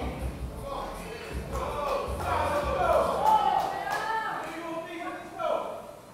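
Indistinct voices calling out, with low thudding pulses underneath during the first few seconds.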